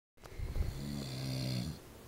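A man snoring: one snore about a second and a half long, rough at first and then settling into a steady low drone. It stops a little before the end.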